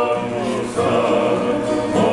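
Tongan faikava group singing: several men's voices singing together in harmony over acoustic guitar, with held notes and a new phrase starting just under a second in.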